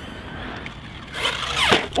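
Team Magic Seth electric RC desert buggy on a 6S battery: faint at first, then about a second in a sharp burst of throttle with tyres spinning on loose dirt, the motor whine falling steeply in pitch as the car lifts into a wheelie. The power on 6S is more than the driver can keep in check.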